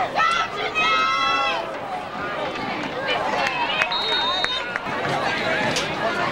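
Spectators at a high school football game, many voices chattering and shouting at once, with one long high-pitched yell about a second in and a brief high steady tone, like a whistle, about four seconds in.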